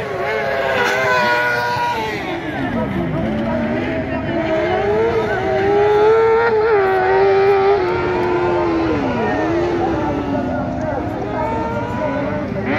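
Kart cross buggies racing on a dirt track, several engines heard at once, revving up and down through the corners. The engine note drops and climbs again twice, about three and nine seconds in.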